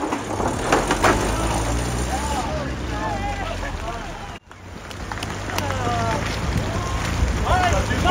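Off-road vehicle engine running with a low, steady rumble, while people call out in the background. The sound drops out abruptly for a moment about halfway through, then the engine and voices return.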